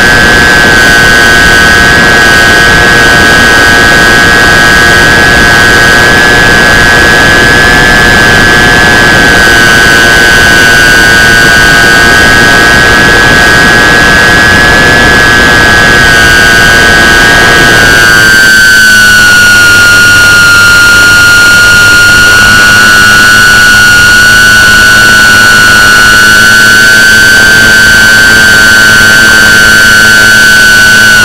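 Electric motor and propeller of a battery-powered radio-controlled FPV plane, heard loud from its onboard camera as a steady high whine over rushing wind noise. About eighteen seconds in, the whine dips slightly in pitch and the rumble beneath it thins out, as the throttle is eased back.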